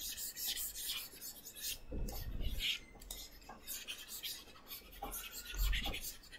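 Faint scratching and rubbing with light clicks, and two dull low thumps, about two seconds in and near the end.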